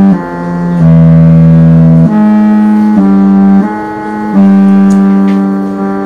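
A single melody of held notes played electronically on a keyboard instrument tuned to the intervals of Byzantine music. The notes step up and down to neighbouring pitches, each held for roughly half a second to a second and a half, with a lower, louder note about a second in.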